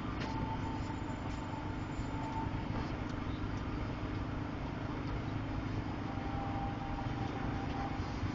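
A steady low mechanical hum over a constant wash of city street noise, with a faint thin whine now and then.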